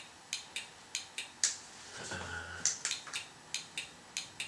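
Turn-signal flasher relay of a 1985 Honda VF500F's 12 V electrical system clicking steadily, about two to three clicks a second, as the blinkers flash: the rebuilt turn-signal circuit is working.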